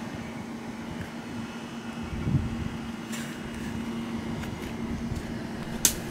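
A water balloon bursting with a single sharp splat on asphalt a couple of storeys below, just before the end. Under it runs a steady low hum.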